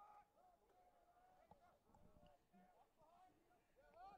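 Near silence, with faint distant calls coming and going.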